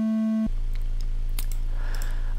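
Befaco Even VCO's triangle wave holding a steady test note, cut off about half a second in as the automated tuning measurement is stopped. Then a low steady hum with a few faint clicks.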